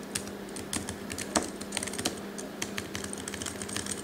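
Computer keyboard keys clicking irregularly as text is typed into a document, over a faint steady hum.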